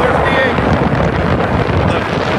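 Wind rushing over the microphone of a phone riding along on a moving moped, with the moped's engine running underneath; a steady, loud rush throughout.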